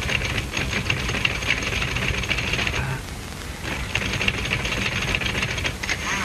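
Manual office typewriter being typed on rapidly, a dense run of key clacks that stops for about a second near the middle and then starts again. It sits over the steady hiss, high whine and low hum of an old optical film soundtrack.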